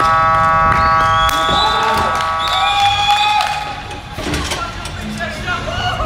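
Indoor soccer arena's electronic horn sounding one steady buzzing note for about two and a half seconds, the buzzer ending the match, with men shouting over it. Scattered knocks and voices follow after it cuts off.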